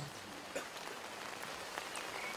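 A pause in the recitation filled by a faint, steady hiss of background noise, with a soft tick about half a second in.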